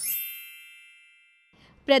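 A bright chime sound effect: one struck ding with a shimmer of high ringing overtones that fades away over about a second and a half.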